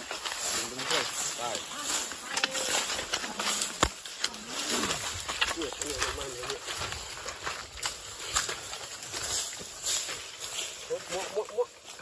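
Dry leaf litter and twigs crunching and crackling irregularly as people move through dry brush, with one sharper snap about four seconds in.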